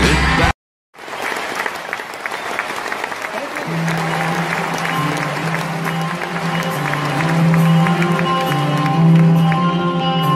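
Audience applause after a brief cut to silence, with a song's instrumental intro of low, sustained notes coming in under the clapping about four seconds in.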